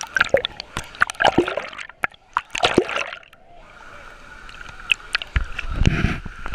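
Water sloshing and splashing around a camera held at the waterline, with sharp clicks of drops and wavelets hitting the housing. About two seconds in the sound goes dull for a moment, as if the camera dips under, and a low rumble of water against the housing comes near the end.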